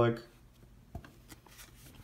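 A word trails off, then tarot cards are handled faintly: a few soft clicks and rubs of card stock as the cards are slid and held, from about a second in.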